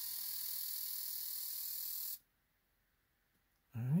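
8.1 Vortec V8 fuel injector held open by a scan-tool balance-test pulse: a steady high hiss for about two seconds that cuts off suddenly, as fuel rail pressure bleeds down from 51 psi to about 21.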